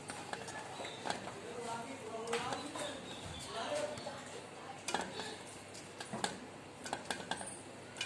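Scattered light taps and clinks of a stainless steel plate as balls of paratha dough are pressed and moved around in it by hand.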